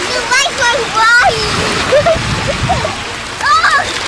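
A small child's high squeals and laughter, several times, over the steady wash of small waves and splashing in shallow sea water.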